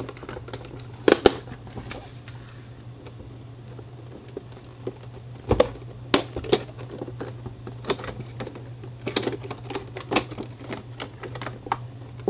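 Cardboard box and clear plastic clamshell packaging being handled and pulled apart, giving irregular clicks, taps and crinkles. The sharpest knocks come about a second in and again around five and a half seconds, with a quick run of clicks near the end, over a steady low hum.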